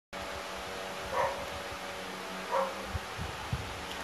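A dog barking twice, about a second and a half apart, over a steady hum and hiss, with a few low knocks near the end.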